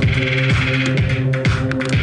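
Electronic dance music played through a Pioneer DJM-2000 DJ mixer, with a kick drum about twice a second under a steady bass note. A faint high steady tone over the first half-second is the mixer's oscillator effect being layered on the track.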